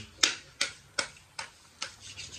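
Crunchy food being chewed close to the microphone: a run of about five short, sharp crunches, a little under half a second apart.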